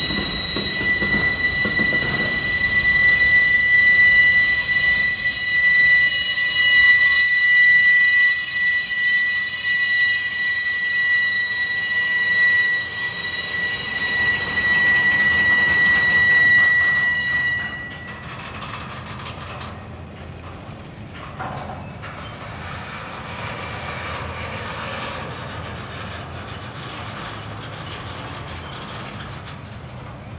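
Intermodal freight cars rolling past with a loud, steady, high-pitched wheel squeal that cuts off suddenly a little past halfway. After that only the quieter rumble and rattle of the passing cars remains.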